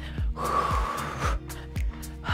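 Background workout music with a steady drum beat, about two beats a second. About a third of a second in comes a long, hard exhale from the exercising woman, lasting about a second.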